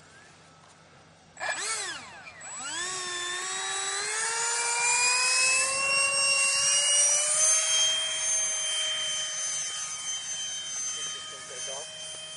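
Electric RC model airplane's motor and propeller opening up with a sudden throttle burst that rises and dips. A whine then climbs steadily in pitch through the takeoff and holds at a high, steady pitch.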